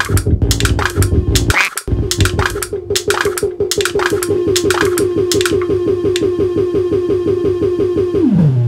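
Experimental electronic music from a synthesizer rig: a fast sequenced pulse repeating at one pitch, overlaid with sharp noisy clicks and glitches. The sound cuts out briefly after about a second and a half, and the clicks thin out in the last few seconds while the pulse carries on.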